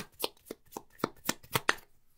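A deck of tarot cards being shuffled by hand, packets of cards slapping together in a steady rhythm of about four clicks a second that stops shortly before the end.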